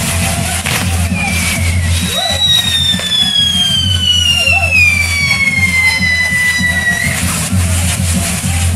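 A whistling firework on a burning castillo fireworks tower gives a long whistle that glides steadily down in pitch for about five seconds, after a shorter falling whistle. It sounds over loud music with a steady bass.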